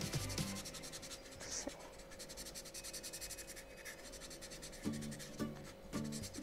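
Felt-tip marker scribbling on corrugated cardboard in rapid back-and-forth strokes, colouring in a patch.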